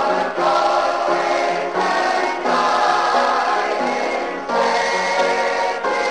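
Gospel music from a 1972 LP: many voices singing a song together in sustained, held notes.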